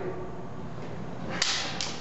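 Two prop daggers thrown down onto a hard floor: a sudden sharp clatter about a second and a half in, followed almost at once by a second, lighter one.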